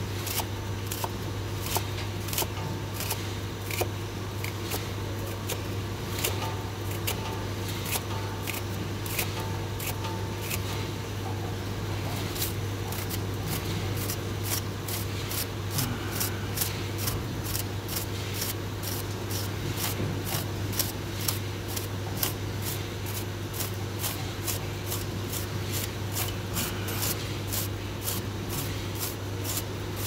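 Plastic Yellow Jacket fin comb raked through the bent fins of a chiller's condenser coil to straighten them: a quick, steady run of short scraping clicks, two or three a second, over a low steady hum.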